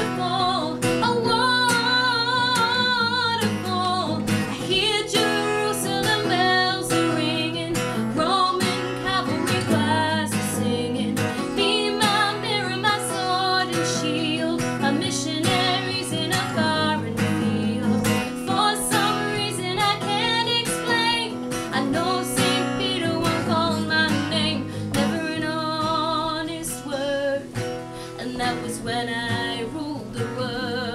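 Acoustic guitar strummed steadily, with a woman singing a melody over it.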